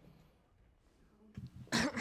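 Faint room tone, then a short cough from a person near the end.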